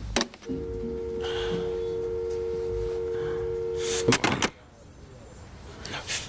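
Telephone dial tone, a steady two-note hum, heard on the line once the other party has hung up. About four seconds in it cuts off with a few sharp clicks and knocks, and a quiet room follows.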